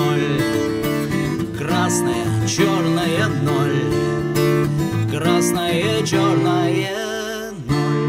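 Steel-string acoustic guitar strummed under a man's voice singing long, wavering held notes. Near the end a last strum is struck and its chord rings on.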